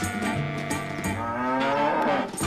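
Background music with a cow mooing once in the second half, one long drawn-out call.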